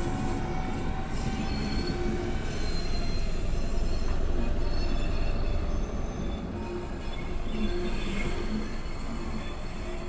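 A train rolling along the track past a level crossing, a steady rumble with short, scattered squeals from its wheels. It grows quieter after about six seconds as the train moves away.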